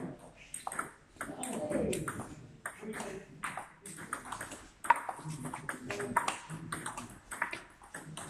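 Table tennis ball clicking off the bats and the table in a rally, a run of sharp ticks with the loudest hit about five seconds in, over voices in the hall.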